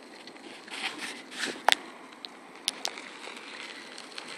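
Faint, steady outdoor background hiss with a few sharp clicks and soft rustling swells.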